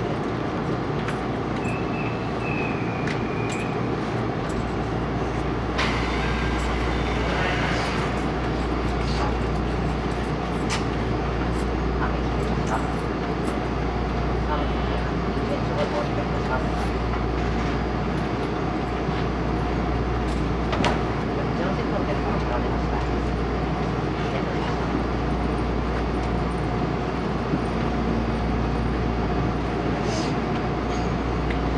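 Cabin noise inside a 373 series electric train car as it stands at a station and then pulls away. A steady low hum from the train comes in a few seconds in, with small clicks and knocks in the car throughout.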